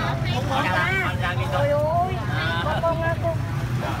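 People talking, with a steady low rumble of street traffic underneath.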